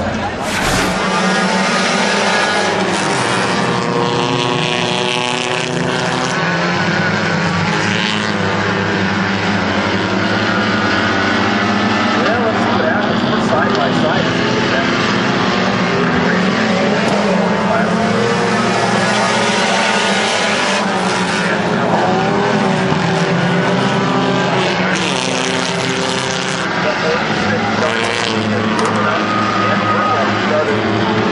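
A field of four-cylinder Hornet-class dirt-track race cars running laps together, many engine notes overlapping and wavering in pitch as the cars speed up and lift around the oval.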